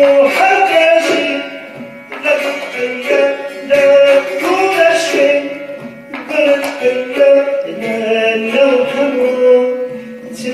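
Live Kurdish folk ensemble of qanun, setar, kamancheh and tombak playing together: a held, gliding melody line over quick plucked strings and hand-drum strokes, swelling and easing between phrases.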